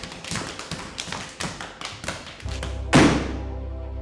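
Rapid hand slaps and boot strikes of Hungarian folk slapping dance, a fast patter of sharp claps many times a second. About two and a half seconds in, a low bass drone enters, and a loud musical hit with a falling sweep follows about a second later.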